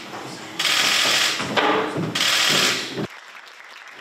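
An audience applauding in two loud waves, dying away about three seconds in.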